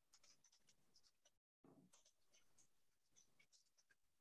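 Near silence with faint, scattered computer keyboard clicks, as text is typed into a shared document; the sound cuts out completely for a moment about one and a half seconds in.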